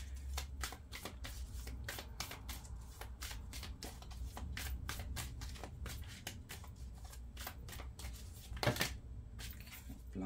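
A deck of oracle cards being shuffled by hand: a quick, continuous run of soft card flicks, with one louder snap near the end.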